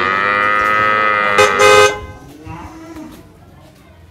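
A cow mooing: one long, loud call that grows louder toward its end and stops about two seconds in.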